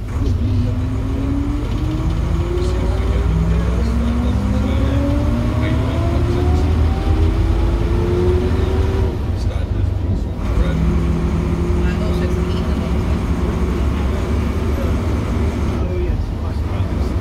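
Volvo Ailsa double-decker bus heard from inside the lower saloon: its front-mounted turbocharged six-cylinder engine rumbles while a whine climbs in steps as the bus pulls away and accelerates. The sound breaks off briefly near the ten-second mark, then the engine settles to a steady note.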